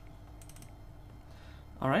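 A few faint, quick clicks of a computer being operated, about half a second in, over a low steady hum; a man's voice begins near the end.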